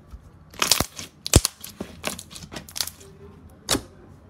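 Translucent yellow slime being pressed and folded by hand, giving a string of sharp crackling pops as trapped air bubbles burst; the loudest pop comes about a second and a half in.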